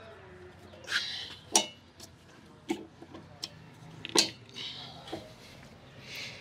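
Hydraulic quick-connect couplers being pushed onto a compact tractor's fittings: about five sharp metallic clicks and clacks, spread out, as the spring-loaded coupler sleeves are worked against their strong springs.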